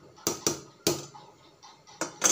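A metal slotted spoon knocked against the rim of an aluminium pot three times, sharp clanks with a short ring, two close together about a quarter-second in and a third just before one second.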